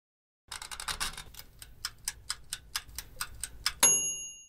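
Mechanical wind-up timer of a Bear toaster oven: a quick run of clicks as the knob is turned, then steady ticking at about four ticks a second. Near the end a single bell ding rings out briefly as the timer runs down.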